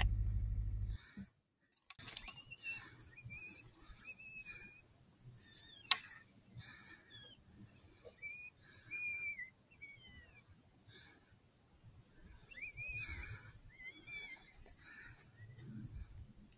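Electronic predator call playing a prey distress sound at night: a run of short, high, wavering squeals repeated over and over. A single sharp click sounds about six seconds in.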